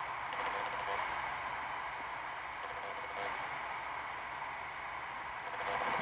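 Quiet, steady outdoor ambience: an even hiss over open fields at dusk, with a couple of faint, brief high-pitched blips.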